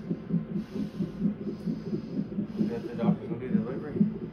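Fetal heart monitor's Doppler speaker sounding the unborn baby's heartbeat during labour, a fast, even, whooshing pulse at about two and a half beats a second. Faint voices come in near the end.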